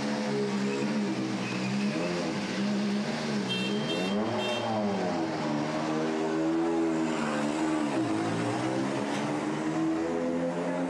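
Volkswagen Polo R WRC rally car's turbocharged four-cylinder engine running at low revs as the car pulls away slowly, its pitch rising and falling with several throttle blips. A few short high beeps sound in the middle.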